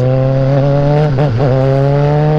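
Motorcycle engine running steadily under way, its pitch rising slightly as the bike speeds up, over constant wind noise.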